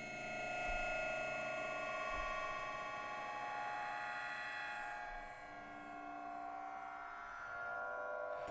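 Absynth 5 software synth playing a sustained, bell-like drone on its 'Abstract Bells' patch with a slow-building envelope. Several steady tones shimmer together, and a new lower note comes in about five seconds in.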